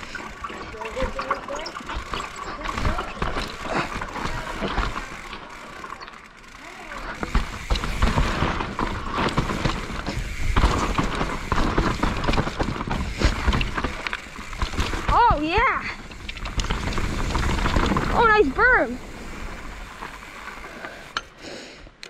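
A 2019 YT Capra mountain bike riding fast down a rough dirt and rock trail: tyres on dirt, frame and chain rattling over roots and rocks, and wind rushing on the microphone. Two short wavering vocal cries from the rider come about two-thirds of the way through.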